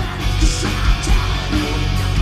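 Live hard rock band playing: distorted electric guitars, bass guitar and drums, with a male lead vocal sung over them.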